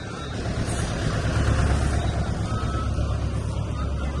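Street traffic: steady low engine rumble of motor vehicles passing on the road, swelling and easing slightly.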